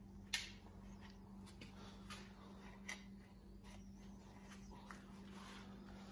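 Faint clicks and taps of small parts being handled at a workbench during a recoil starter repair, the sharpest about a third of a second in and a few lighter ones near two, three and five seconds, over a steady low hum.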